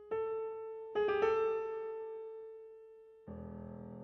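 Concert grand piano playing sparse, slow notes that ring and die away. One note is struck at the start and two more about a second in, then a deeper chord comes in near the end.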